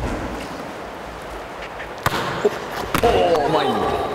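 A volleyball struck by hands and bouncing on a wooden gym floor: sharp slaps at the start, around two seconds in, and a loud one about three seconds in, the last followed by players' voices calling out.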